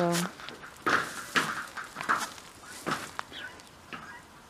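Footsteps on dry straw and dirt: a handful of irregular steps.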